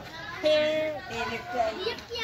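People's voices talking and calling out, with one voice drawn out for about half a second shortly after the start.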